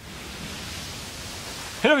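A steady, even hiss with no distinct events. A man's voice starts near the end.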